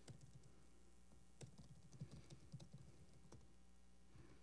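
Faint typing on a laptop keyboard: irregular key taps, with a steady low hum underneath.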